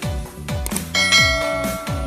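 Electronic intro music with a steady kick-drum beat, about three beats a second. About a second in, a bright bell chime rings and holds for about a second: the notification-bell sound effect of a subscribe-button animation.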